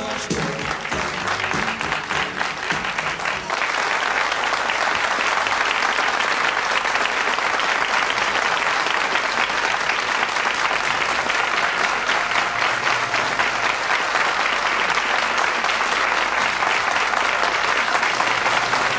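Audience applauding steadily, a dense clatter of clapping that rises as the song's last notes die away in the first few seconds.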